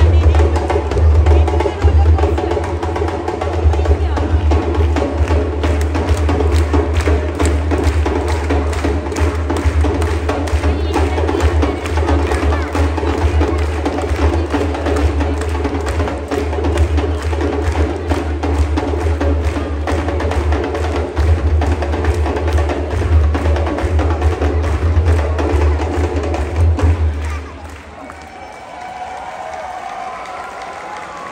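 A troupe of hand drummers playing a fast, loud beat with a deep bass underneath, which stops abruptly near the end.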